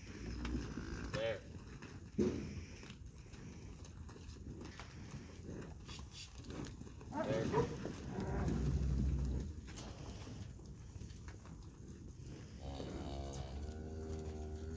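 Beef cattle mooing: a short call about seven seconds in and a longer, low moo starting near the end.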